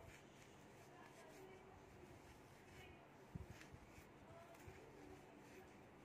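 Near silence: faint handling of tweezers pushing fibre stuffing into crocheted fabric, with a few soft clicks, the clearest about three and a half seconds in.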